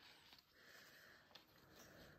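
Near silence, with the faint scratching and tapping of a gel pen making dots on paper.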